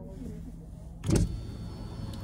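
Car cabin sounds with the car stopped: a low steady hum, broken by one short thump about a second in.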